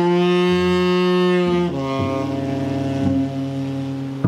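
Tenor saxophone holding a long low note, then stepping down to a lower held note a little before halfway, with cello sounding underneath in a live jazz group.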